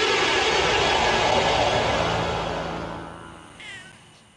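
A loud, even wash of sound that fades away over the first three seconds, then a single short cat meow falling in pitch near the end.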